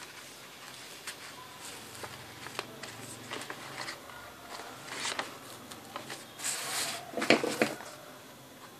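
Paper and ribbon rustling and crinkling as hands tie a ribbon bow onto a folded paper gift bag. Scattered small clicks throughout, with louder crinkling bursts near the end.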